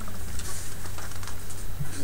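A few light clicks over a steady low hum.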